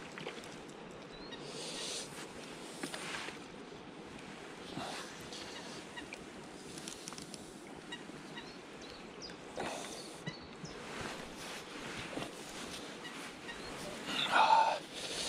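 Faint outdoor pond ambience with distant waterfowl calls and a few short noisy rustles or splashes.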